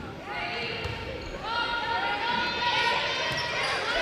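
Athletic shoes squeaking repeatedly on a hardwood gym floor as volleyball players move during a rally, with many short high squeaks overlapping and building in the second half, in a reverberant gym.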